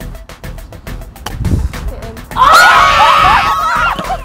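Background music with a steady beat, a low thump about halfway through, then loud excited screaming from several women as the final shot hits a 50-point target.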